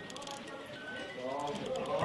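Antique cigarette lighter with a built-in music box, just wound and playing faintly: a few sparse thin notes and light clicks.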